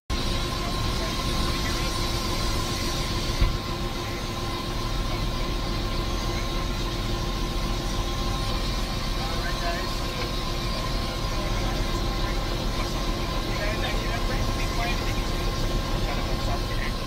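Helicopter turbine engine and rotor running, heard inside the cabin: a steady hum with a steady whine over it, and a single sharp knock about three and a half seconds in.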